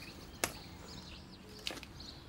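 Quiet outdoor background with a single short, sharp click about half a second in, and a fainter tick shortly before the end.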